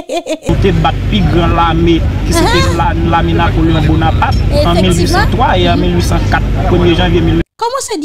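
Loud recorded audio: voices over a steady low hum and rumble. It cuts in about half a second in and cuts off abruptly near the end.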